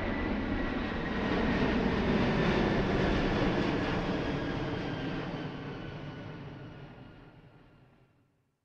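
A dense, noisy rumbling wash with a few faint held tones, like a distant aircraft or train, swelling slightly in the middle and then fading out to silence over the last few seconds.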